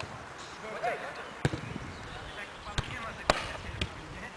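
Football being kicked on an artificial-turf pitch: about four sharp thuds of the ball being struck, the loudest a little after three seconds in.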